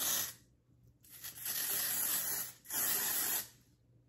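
Aerosol can of Sally Hansen Airbrush Legs spray tan spraying onto an arm in three hissing bursts: a brief one, a long one of about a second and a half, then a shorter one.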